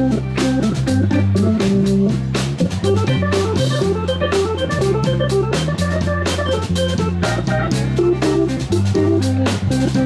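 Live blues band playing an instrumental boogaloo groove: electric guitar notes over a drum kit and a stepping bass line, steady throughout.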